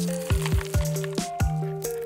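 Background music with a steady beat, over a light rustle of a hand stirring and lifting a bowl of small foam beads.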